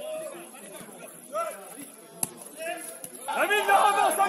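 Footballers' voices calling and shouting on the pitch, scattered at first and louder near the end. A single sharp thud about two seconds in.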